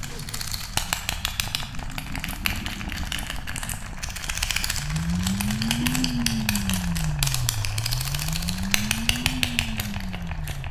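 Horror sound-design drone: a low rumble under dense crackling clicks, joined about halfway by a low tone that slowly rises and falls, each swell lasting about three seconds.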